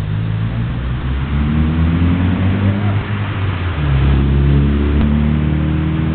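A car driving past close by on the road, its engine hum and road noise swelling as it goes by. A second engine note comes in about four seconds in, the loudest part.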